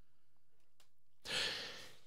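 A man's breath in, through the mouth into a close microphone, starting a little past halfway and fading over under a second, against quiet room tone.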